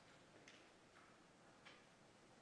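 Near silence: faint room tone with two faint ticks, about a second apart.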